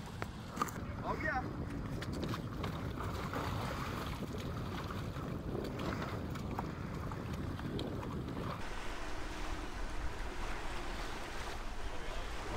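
Boat engine running amid wind and surf, with a few voices and scattered knocks. About nine seconds in the low rumble drops away, leaving a thinner hiss with a faint steady hum.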